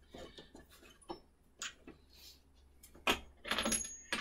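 Light clicks and knocks of parts being handled on a switched-off oscillating spindle sander while a large sanding drum is fitted to the spindle, with a small metallic clink and a louder knock about three seconds in.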